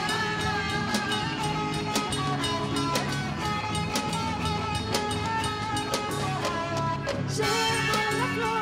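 Live band playing folk dance music: drums keep a steady beat under guitars and held melody notes, without a break.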